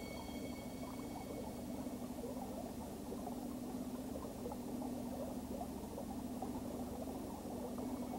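Running stream water, a steady low burble, with a steady low hum underneath.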